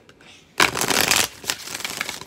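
Deck of tarot cards being riffle-shuffled: a loud, rapid flutter of cards starts about half a second in. Quieter crackling follows, with a few sharper clicks as the halves are bridged back together near the end.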